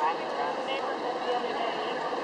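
Background voices of players and spectators on a flag football field, many people talking and calling out at once with no one voice clear, over a steady hall noise.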